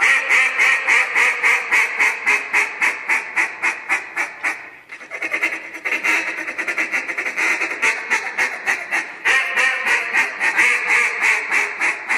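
Handheld duck call blown in a live duck calling contest routine: fast, continuous runs of quacks, several a second, that sound just like a duck, with a brief break about five seconds in.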